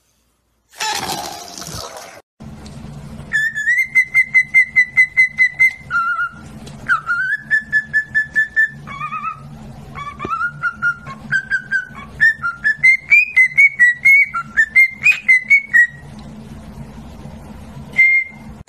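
Cockatiel whistling: quick runs of short repeated notes, about five a second, then a wandering whistled tune that rises and falls, over a steady low hum. A brief noisy sound comes about a second in, before the whistling.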